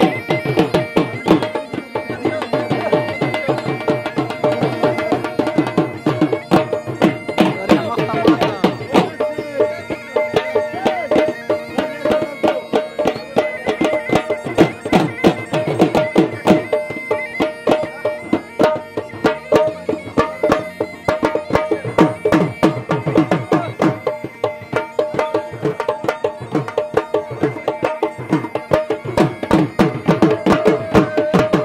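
Attan dance music: a surnai (double-reed pipe) plays a steady, piercing melody over fast, driving dhol drum beats.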